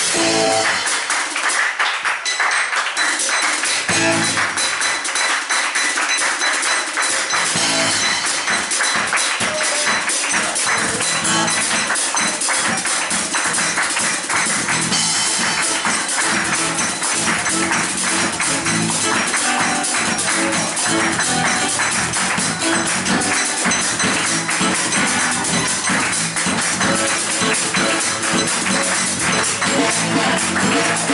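A small acoustic band playing live: acoustic guitar with a drum kit, the cymbals keeping a steady, busy beat. About seven seconds in, fuller lower notes come in under the percussion.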